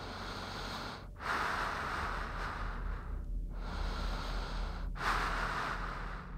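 Breathing heard over a phone voicemail: a faint steady hiss of static for about a second, then three long, slow breaths into the line.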